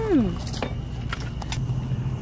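A steady low hum with a few short, light clicks and knocks, like utensils or glassware handled at a table. A voice trails off at the very start.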